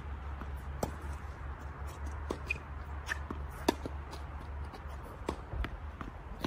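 Tennis rally on an outdoor hard court: a string of sharp pocks from racket strikes and ball bounces, several seconds apart and unevenly spaced. A low steady rumble runs underneath and stops about five seconds in.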